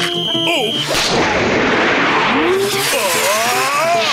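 Cartoon slapshot sound effects over background music: about a second in, a loud rushing whoosh lasting over a second, followed by a wavering, drawn-out cartoon yell.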